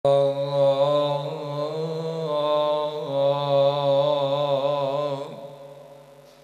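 A voice chanting a long, wavering melodic line over a steady low drone, fading out about five seconds in.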